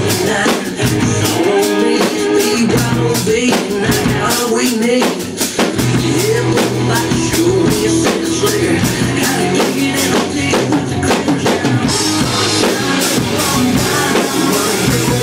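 A rock drum kit played along with a country-rock recording: a steady beat of kick, snare and cymbal hits under the band. The cymbals get busier near the end.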